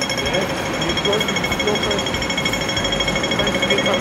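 Pedestrian crossing signal ticking rapidly, about ten ticks a second, the fast rhythm that marks the green walk phase.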